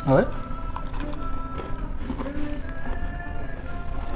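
Background music with long held notes that shift in pitch every second or so, after a brief spoken word at the start.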